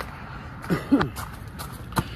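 Footsteps crunching on gravel, with a man's short, falling-pitch vocal sound as he crouches down, a little under a second in.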